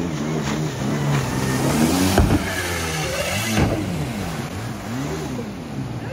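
Stand-up jet ski engine running and revving as it turns, its pitch swinging up and down several times, most of all in the second half. Two sharp noises cut through it, about two seconds in and again a second and a half later.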